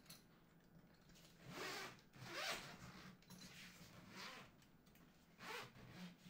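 Zipper on an Aputure padded carrying case being pulled open around the lid, in several short pulls.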